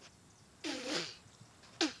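A man coughing: a longer, rough cough a little after the first half-second, then a short sharp cough near the end.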